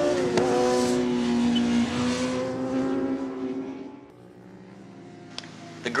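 2006 Kawasaki Ninja ZX-10R's inline-four engine running at high revs under way, with a brief drop and recovery in pitch about half a second in, then a steady note that fades away after about four seconds.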